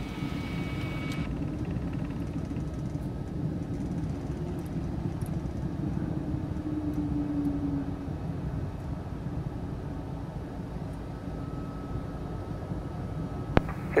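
Cockpit noise of the Piaggio P180 Avanti's twin Pratt & Whitney Canada PT6A turboprops running at low taxi power: a steady low rumble with a faint hum, heard from inside the cockpit. A single click comes shortly before the end.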